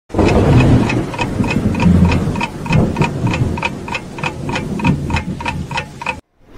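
Clock ticking steadily, about three ticks a second, over a low, uneven hum that is loudest in the first half and weakens towards the end.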